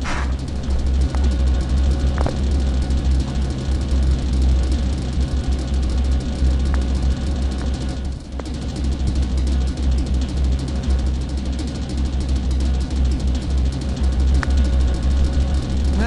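A loud, steady low rumble with a hiss over it that holds without a break, with a few faint short tones now and then.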